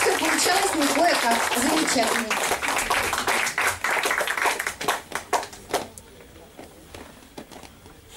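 Audience applause, with voices talking over it for the first couple of seconds; the clapping thins out and dies away about six seconds in.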